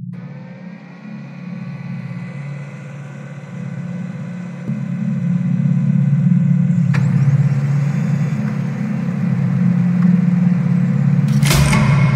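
Sci-fi energy-beam sound effect: a steady low electric hum with faint high tones over it. The hum grows louder about halfway through, and a sharp burst comes near the end as the figure in the beam appears.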